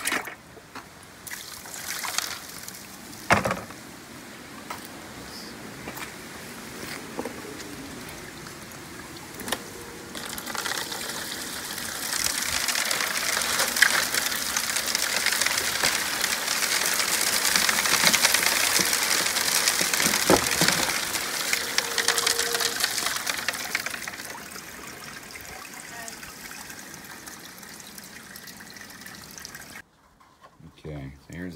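Water pouring and trickling over a sluice as material is washed off it, heaviest through the middle and easing near the end, with a few knocks in the first few seconds.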